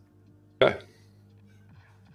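A man says a single short "okay" about half a second in, over faint background music of held chords.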